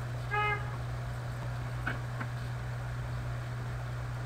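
Steady low electrical hum, with a brief pitched beep about a third of a second in and two faint clicks around two seconds in.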